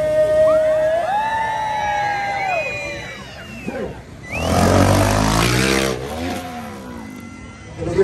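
Dirt bike engine revving hard for about a second and a half, about halfway through, over music.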